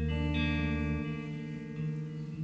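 Hollow-body electric guitar played live through reverb, picked notes ringing and sustaining over a deep held note that drops away about halfway through.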